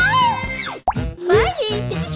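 Background music under a cartoon character's voice, with a short sudden sound effect a little under a second in.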